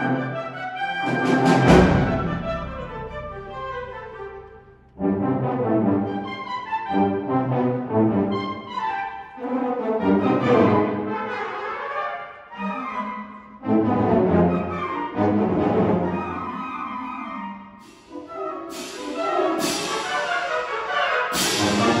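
High school concert band of woodwinds, brass and percussion playing a piece, with a loud full-band accent about a second and a half in. The music moves in phrases with short breaks near five, fourteen and eighteen seconds, then builds again with sharp accents near the end.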